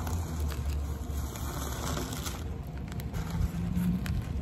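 Plastic bubble wrap crinkling and rustling as it is handled and pulled off a cardboard rod tube, over a low steady hum.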